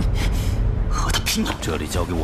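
A man's voice speaking a short line, with a gasp, over a steady low rumble.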